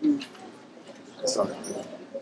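Children's voices from a performing group: a short low vocal sound at the start and a louder call about a second and a half in.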